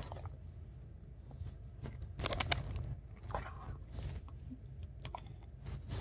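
A dog's mouth close to the microphone, chewing and crunching: a few scattered short crunches over a low rumble.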